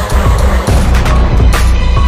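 Loud bass-heavy backing music with a heavy low bass line and a sharp drum hit about one and a half seconds in, with no singing.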